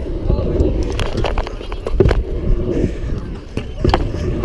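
Stunt scooter rolling on concrete, heard from a GoPro mounted on the rider: a steady low rumble of wheels and wind on the microphone, with several sharp clacks from the deck and wheels.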